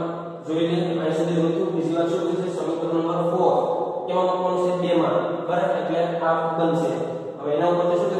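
A man lecturing in Gujarati, talking on almost without pause in an even, level-pitched, chant-like voice.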